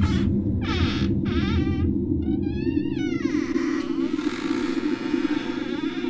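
Low, dark ambient music drone under a few drawn-out creaks, the last one sliding down in pitch: the sound effect of an attic hatch being opened.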